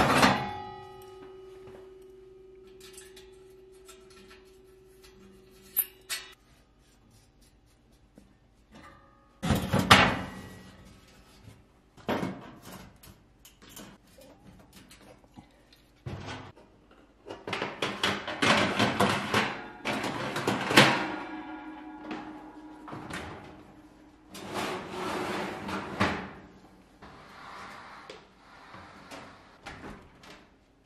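Sheet-metal parts of a gas oven being handled and set back in place: clanks, knocks and scraping in several separate bouts with short pauses between. A loud clank at the start leaves a ringing tone for several seconds.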